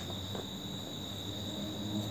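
Crickets trilling steadily, a continuous high-pitched drone, over a faint low hum, with one soft knock about a third of a second in.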